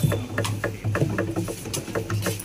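Room noise: a steady low hum with scattered light clicks and rustles.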